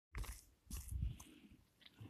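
Boots crunching on packed snow and ice, a couple of short crunchy steps with dull low thuds, the first near the start and another around one second in.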